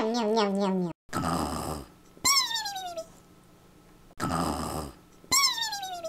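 Cartoon snoring sound effect, twice over: a rasping snore in, then a whistle falling in pitch on the way out. It opens with a drawn-out vocal sound that drops slightly in pitch.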